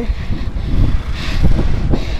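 Wind buffeting the camera's microphone on a moving bicycle: an uneven low rumble.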